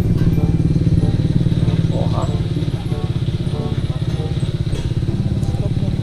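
A motorcycle engine idling with a steady, even pulse.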